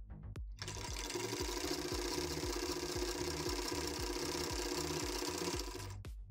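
Usha Tailor Deluxe half-shuttle sewing machine stitching through cloth at a steady fast run that starts about half a second in and stops just before the end. It runs smoothly and lightly, freshly oiled after its jam was cleared.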